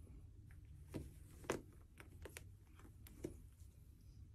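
Faint, scattered light taps and rustles as a kitten scrabbles and rolls on fabric over a person's lap, the sharpest tap about a second and a half in, over a low steady room hum.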